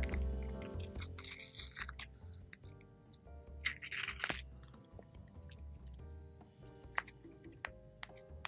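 Soft background music with a few crinkles of the paper baking cup being peeled off a strawberry crumble muffin, the loudest about four seconds in.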